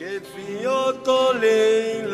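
Singing in Hungarian Romani folk style starts suddenly after a quiet plucked-string passage: a solo voice holding long, slightly bending notes, with a brief break about halfway.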